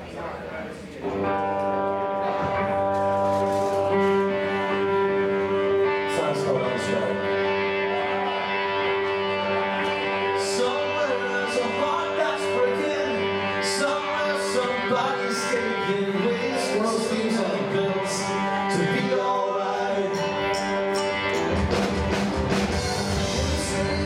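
Live rock band playing the opening of a song: held electric guitar and keyboard chords begin about a second in, and cymbal hits from the drum kit join about six seconds in.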